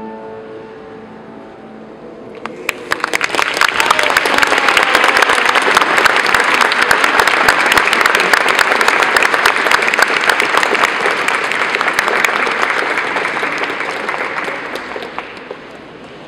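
Audience applauding after the last piano notes die away. The clapping starts about two and a half seconds in and fades out near the end.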